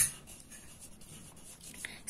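A pencil writing by hand on a paper textbook page: faint, scratchy short strokes. It opens with a single sharp click.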